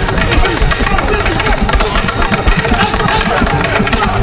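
Loud, dense fight-scene soundtrack: rapid stick strikes and blows in quick succession with shouting, over a heavy low rumble.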